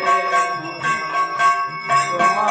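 Temple bells ringing continuously during arati worship: a steady sustained ringing tone with rapid repeated strikes, over devotional music.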